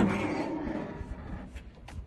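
A car hood being opened: a sharp click of the latch releasing, then about a second and a half of rushing, scraping noise as the hood is lifted on its hinges, fading out.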